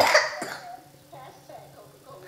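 A single short cough at the start, followed by quiet room sound with a few faint, brief sounds.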